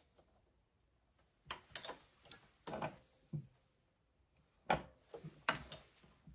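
Light metallic clicks and knocks of a Dillon RL550B reloading press as its handle is worked and a cartridge is handled at the shell plate. The clicks come irregularly in small clusters, the sharpest about three-quarters of the way through.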